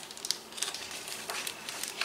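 Paper rustling as a page of a large picture book is turned and handled, a string of short crinkles and crackles.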